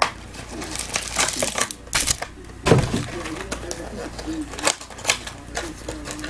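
Foil trading-card packs being torn open and handled, giving a run of sharp crinkles and rips, with a dull thump a little before the middle.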